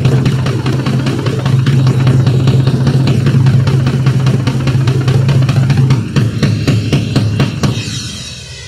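Rock drum kit solo, loud: a fast, continuous roll of strokes over a sustained low tone. The low tone drops away about six seconds in and the rolling thins out toward the end.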